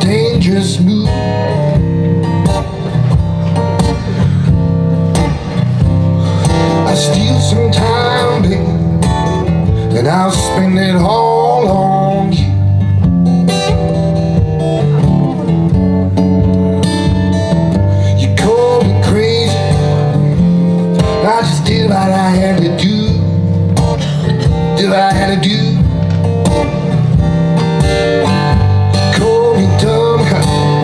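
Acoustic guitar played live in a blues style: a steady strummed rhythm with gliding, bent notes over it.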